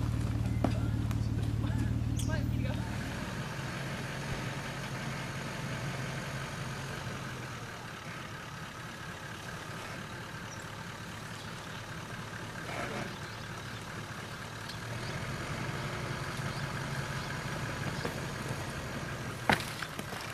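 Off-road 4WD engines running at crawling speed. A close, steady low engine note lasts about three seconds, then stops suddenly and gives way to a quieter, more distant engine working slowly through a deep rut. That engine grows a little louder in the last few seconds.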